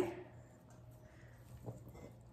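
Quiet kitchen with a faint steady hum, and one short soft knock near the end as blueberries are tipped from a towel into a stainless steel mixing bowl of cake batter.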